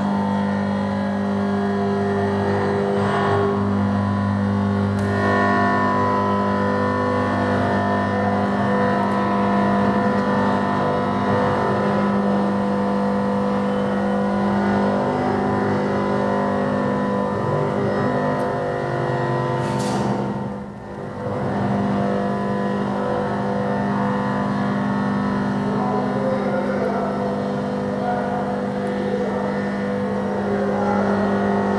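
Computer-generated sound from an image-to-sound art piece, which turns the pixels of a live moving image into tones. It is a dense layer of steady held tones whose pitches shift in blocks every few seconds, with a brief drop in level about twenty seconds in.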